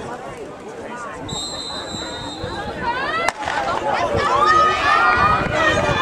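Spectator chatter, then a steady high whistle for about a second and a half. A single sharp crack halfway through is a starter's pistol starting the 4x200 relay, and spectators' yelling and cheering grows louder after it.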